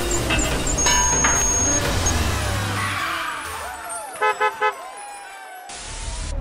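Upbeat outro music with cartoon car sound effects. A car horn beeps three quick times about four seconds in, and a brief hiss comes at the very end.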